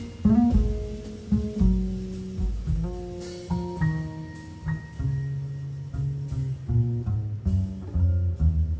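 Live jazz performance: a grand piano plays a run of single melody notes over strong low bass notes.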